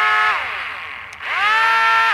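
The twin electric motors and propellers of a Sky Hunter 230 RC flying wing, held in the hand, running at a steady whine, winding down, then spinning up again about a second in and starting to wind down at the end. Both motors are being driven from the steering control with the throttle centred.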